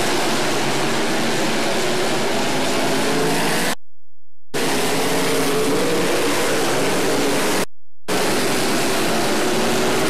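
Dirt-track open-wheel modified race cars' engines running at racing speed, under a heavy even hiss. The sound cuts out completely for a moment twice, about four seconds in and again near eight seconds.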